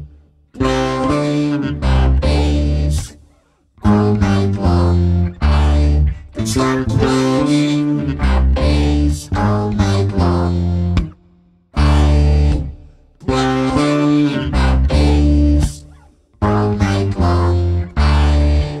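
Fbass BN5 five-string bass guitar played through effects together with a vocoded voice, sounding as stacked held chords over a deep bass line. It comes in short stop-start phrases with brief silences between them.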